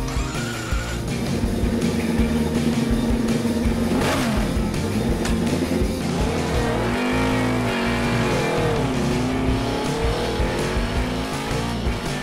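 Motorcycle engines revving and pulling away, with a sharp pitch sweep about four seconds in and several rising and falling revs from about six seconds on, over background music.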